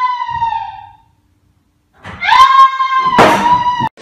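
A person screaming: one long, high-pitched scream that fades out about a second in, then after a second of silence a second long scream that cuts off abruptly just before the end.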